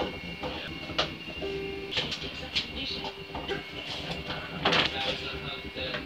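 Indistinct background voices over a steady hum, with a few sharp clicks, the loudest near the five-second mark.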